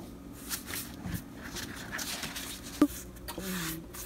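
Soft, irregular rubbing and scraping of a paintbrush working annatto dye onto paper, with a single sharp tap just under three seconds in.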